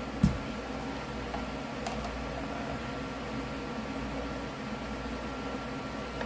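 A steady machine hum and hiss, like a fan or small appliance running, with one short knock just after the start.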